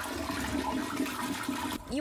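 Household toilet flushing, a steady rush of swirling water that gives way to a voice near the end.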